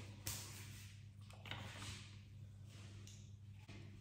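Quiet room with a steady low hum and faint handling sounds: a light knock about a quarter second in, then a few soft rustles as things are picked up and moved.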